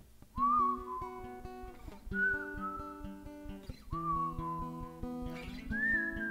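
Washburn cutaway acoustic guitar playing a steady chord pattern, with a whistled melody over it in four short phrases, each starting high and sliding down a little.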